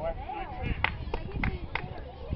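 Spectators calling out, then four sharp hand claps about a third of a second apart.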